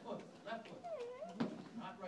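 Indistinct voices, including a high voice whose pitch slides down and back up, like a drawn-out 'ooh'. There is a short sharp knock about one and a half seconds in.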